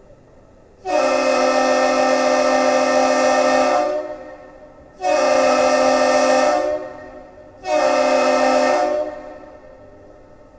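Duluth Aerial Lift Bridge's air horn, sounding a chord of several notes at once, blows three blasts in salute to a passing ship: one long blast of about three seconds, then two shorter ones of about a second and a half.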